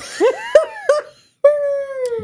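A child's high voice, dropped in as a sound effect: a few short rising-and-falling wails, then one long held wail from about a second and a half in that slowly falls in pitch.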